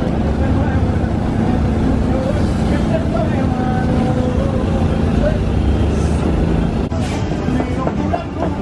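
A steady low engine-like rumble, with voices murmuring behind it; the sound breaks off abruptly about seven seconds in.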